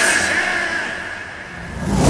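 The film score cuts out, leaving a single held high tone that fades away. A rising whoosh then swells up near the end as a sound-effect riser.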